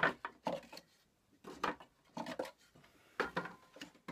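Wooden frames being pulled out of a wooden mini mating nuc box: several short wooden knocks and scrapes as the frames rub and tap against the box.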